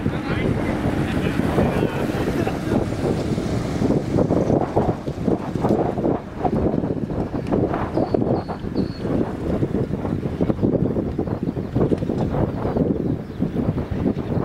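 Airbus A350 airliner's Rolls-Royce Trent XWB jet engines at takeoff power, a loud, unsteady roar as the aircraft lifts off and climbs away, mixed with wind noise on the microphone.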